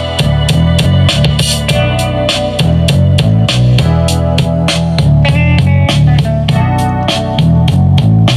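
Instrumental music with a steady drum beat and heavy bass, played loud through a ROJEM portable bass-tube Bluetooth speaker from an MP3 player on the aux input.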